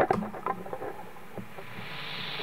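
Faint steady hiss from a guitar amp fed by an overdrive pedal with its gain turned up high, with a few soft clicks of handling noise near the start.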